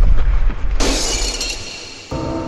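A deep low boom, then a sudden bright crash like shattering glass just under halfway through, fading away.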